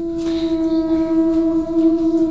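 A single steady droning note with overtones, swelling in and then holding level at one pitch.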